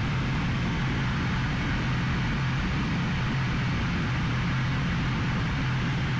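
Steady in-flight cockpit noise of an Aero L-39 Albatros jet trainer: an even hiss of airflow and turbofan engine over a constant low hum, unchanging throughout.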